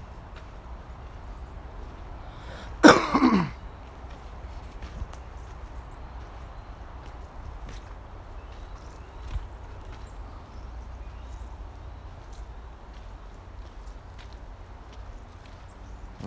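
A single loud cough, about three seconds in, from the person filming: a sharp burst with a voiced tail that falls in pitch. Faint footsteps on dry dirt and a low steady rumble on the microphone run underneath.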